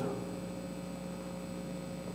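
Steady electrical hum with a faint hiss underneath: the background tone of the recording.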